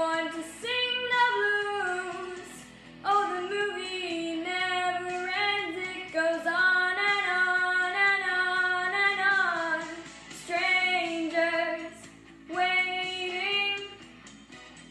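A young girl singing solo in long held phrases, pausing briefly for breath between them.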